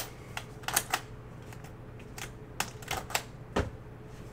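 Metal latches on an aluminium briefcase-style card box being pressed and worked by hand: a string of irregular sharp clicks and clacks, with a duller knock near the end. The latch will not open, which the host calls broken.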